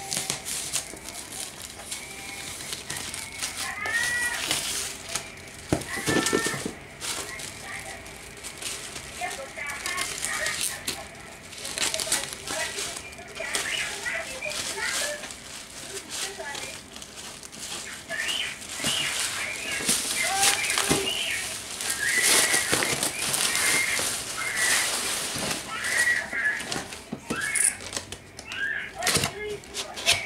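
Black plastic shipping wrap crinkling and rustling as it is cut with scissors and pulled off a cardboard box, in irregular bursts that are loudest about two thirds of the way through. Short high-pitched calls break in several times.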